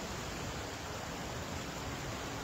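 Steady, even outdoor background hiss with no distinct event in it.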